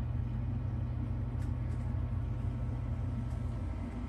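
A steady low mechanical hum with no change in pitch or level, and a few faint ticks over it.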